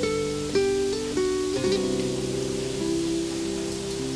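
Soft background music on acoustic guitar: a few plucked notes in the first second and a half, then held notes ringing on.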